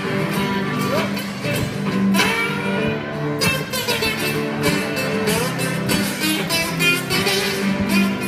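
Live instrumental guitar jam: two acoustic guitars and an electric guitar playing together, with quick picked runs and notes that slide in pitch.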